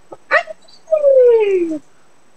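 A short yelp, then one long whine that slides steadily down in pitch for almost a second.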